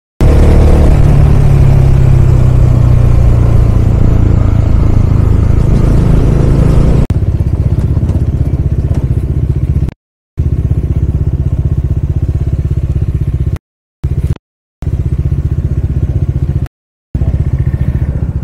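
Bajaj Dominar's single-cylinder engine running while the bike is ridden, heard from the rider's position with wind rush. Its note falls slowly in pitch over the first seven seconds. Then it runs steadier and a little quieter, broken by a few abrupt brief silences.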